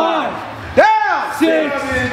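Voices shouting a string of short calls in a steady rhythm, each rising and falling in pitch, about one every three-quarters of a second.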